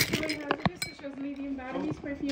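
A bunch of metal keys clinking as they are handled on a counter: several sharp clinks in the first second, with quiet talking behind.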